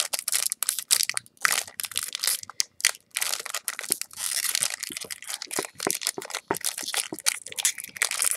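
Foil Yu-Gi-Oh booster-pack wrapper being twisted and torn open by hand: a run of irregular crinkles and crackles with brief pauses.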